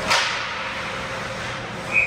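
One sharp crack of a hockey puck being struck, about the start, with a short ring-off in the arena.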